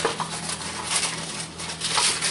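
Rustling and crinkling as a cardboard box of wax paper is handled, with a steady low hum underneath.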